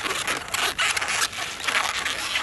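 Long inflated latex twisting balloon squeaking and rubbing as it is gripped and twisted into segments, in about three scratchy strokes.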